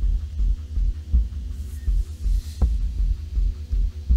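Background music: a deep bass pulse repeating about every three quarters of a second under steady low sustained tones.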